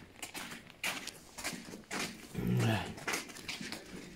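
Footsteps crunching on the grit-covered concrete floor of a tunnel, about two a second. Just past halfway, a man makes a short low sound that falls in pitch, the loudest thing here.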